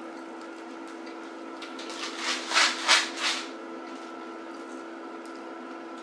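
Four or five crisp crunches in quick succession, a couple of seconds in, from bites into air-fried egg rolls, over a steady low hum.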